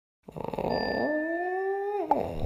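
A drawn-out animal howl sound effect for an animated logo: one long call that starts a quarter second in, slides up in pitch about a second in and holds.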